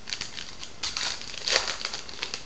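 A baseball card pack's wrapper being torn open and crinkled by hand, in a quick run of crackles that is loudest about a second and a half in.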